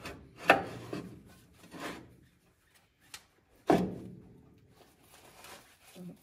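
Scraping and rubbing of a steel linkage part being slid into its mounting under the vehicle's chassis, with a single sharp click about three seconds in.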